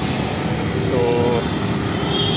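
Steady street background noise, a continuous rumble and hiss like passing traffic, with a man saying one short word about a second in.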